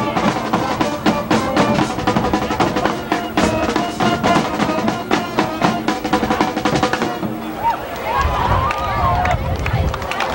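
School marching band playing: drums beating a steady fast rhythm under held horn notes. The music falls away about seven seconds in, leaving voices.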